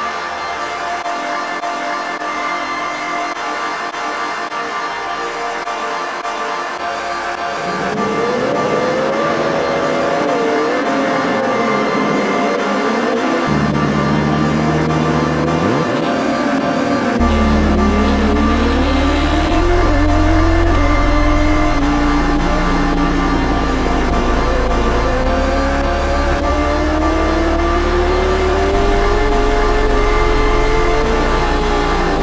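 Background music, joined from about eight seconds in by racing motorcycle engines revving and accelerating, their pitch rising and falling through the gears over a steady bass line.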